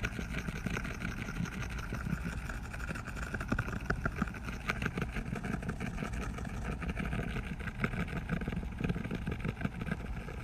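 A steady mechanical hum, engine-like, with a few held tones and a continuous light crackle over it.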